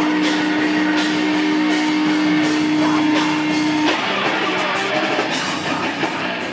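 Grindcore band playing live, electric guitar and drums. A single held note sounds over the band and cuts off sharply about four seconds in.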